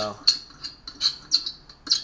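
Short high-pitched metal-on-metal scrapes and clicks, about six in two seconds, as the overtightened ventilator nut on top of a 1946 Coleman 220C lantern is worked loose.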